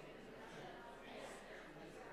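Faint, indistinct murmur of a seated congregation talking quietly among themselves, with a brief soft noise a little over a second in.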